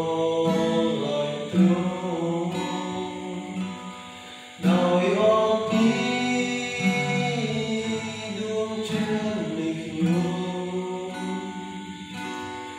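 Steel-string acoustic guitar strummed in slow chords, struck afresh every few seconds, with a young man's voice singing in sustained notes over it.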